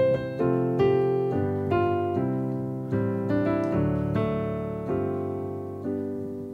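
Roland RD-2000 digital stage piano playing its physically modelled piano-plus-choir-pad patch: slow chords struck about once a second, each left to ring and fade. Its tone is one the player calls boxy.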